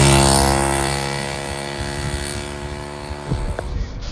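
A motorcycle passes by, its engine note dropping in pitch and fading steadily as it moves away.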